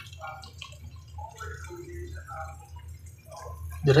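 Macaroni in tomato sauce bubbling faintly in a frying pan: scattered soft pops and blips over a low steady hum.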